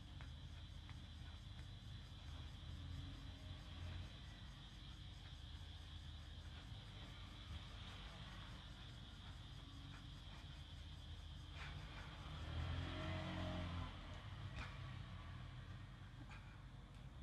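Faint steady background hum and hiss, with a louder low rumble that swells and fades over about a second and a half near the end.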